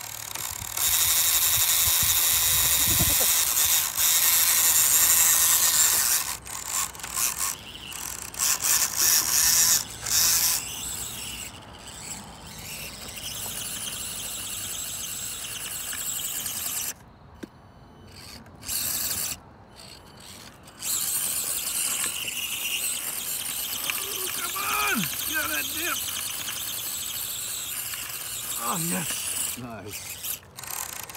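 Small electric motors and gear drivetrains of 1/24-scale RC crawlers whining under load, starting and stopping in long spells as the throttle is worked. The gearing sounds crunchy and ratcheting, which the owners take for damaged gears.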